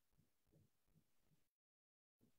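Near silence: faint low room noise from an open call microphone, dropping to complete silence about one and a half seconds in.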